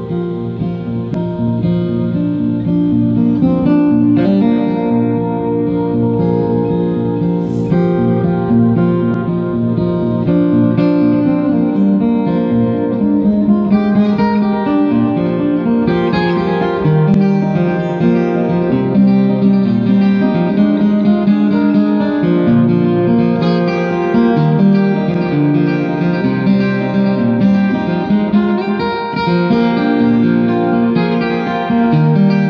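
Solo acoustic guitar plucked in a continuous instrumental passage, notes ringing into one another, with no singing.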